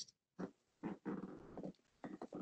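Faint, short vocal sounds from a person on a video call, such as a low murmur or breath, lasting about a second in the middle of a pause in the talk.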